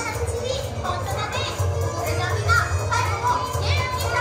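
Upbeat stage-show music with a steady bass beat, mixed with many young children's voices calling out and chattering over it.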